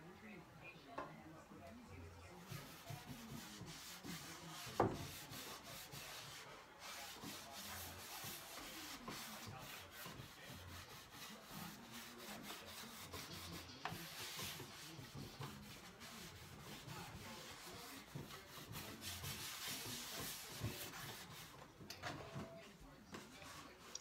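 Hand rubbing in repeated strokes over the bare wooden inside of a drawer, faint and scratchy, with a single sharp knock of the drawer about five seconds in.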